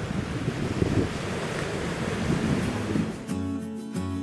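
Strong wind buffeting the microphone over surf washing on the shore. About three seconds in, it gives way abruptly to acoustic guitar music.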